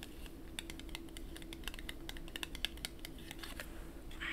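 Long acrylic fingernails tapping on a paper ticket stub: a run of light, quick, irregular clicks, several a second, over a faint steady hum.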